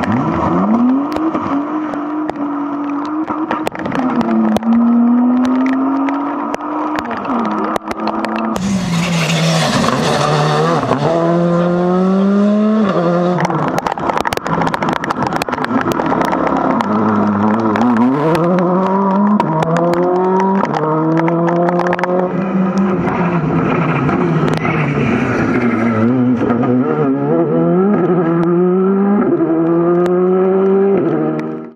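Rally cars passing one after another, first a BMW 3 Series and then a Hyundai i20 R5, engines revving hard up through the gears with quick upshifts, over and over. Frequent sharp cracks run through it, with a burst of hiss about nine seconds in.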